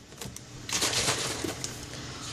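Liquid coffee creamer being poured from a plastic bottle into a small mug: a soft, even pouring hiss, with a few light clicks.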